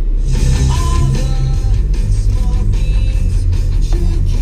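Rock music with guitar playing from a Ford Fusion's car radio, coming on suddenly just after the start as the radio is switched on.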